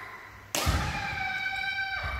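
A sudden thump about half a second in, then a young kendo fencer's high-pitched kiai shout, held steady for over a second before it drops off.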